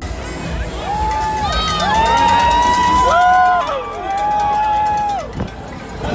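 A crowd of half-marathon runners whooping and cheering at the start: several long rising-and-falling "woo" calls overlap, with scattered clapping in the first half, as the pack begins to move off.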